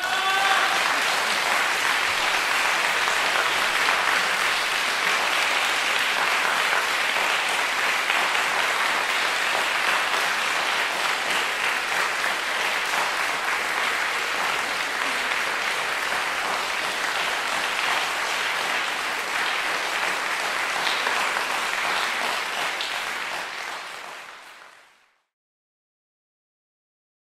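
Audience applauding steadily, then fading out near the end.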